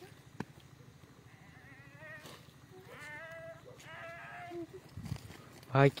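Faint quavering cries with a wavering pitch, from about two to four and a half seconds in, after a single sharp click. A man's loud shout of "bhai" comes just before the end.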